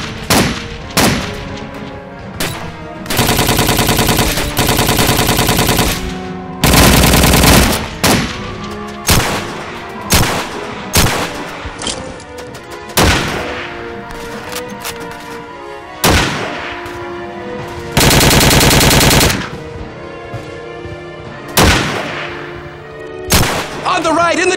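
Battle gunfire sound effects: single rifle shots throughout, with several long bursts of machine-gun fire, over background music.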